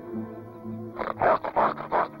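Background film score with steady low notes. About a second in, a wild animal gives a rapid run of short, loud calls, about five in quick succession.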